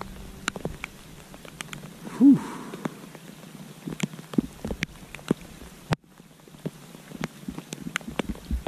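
Steady rain falling on creek water, with scattered sharp ticks of drops striking close by, on the kayak or gear. A brief low hum-like voiced sound comes about two seconds in.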